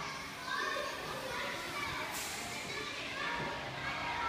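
Several children's voices calling and chattering as they play, in a large indoor hall.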